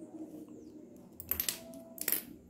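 Metal alligator clips clicking as they are unclipped from stitched grosgrain ribbon and put down, with light rustling of the ribbon: a quick cluster of clicks about a second and a half in and another at the very end.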